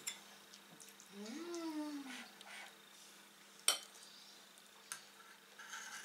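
A metal spoon clinking and scraping in a ceramic bowl as a toddler eats, with one sharp clink a little past halfway and a softer one about a second later. Near the start, a short hummed voice rises and then falls in pitch.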